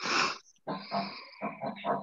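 Laughter over a video-call line: one loud burst, then a run of shorter bursts.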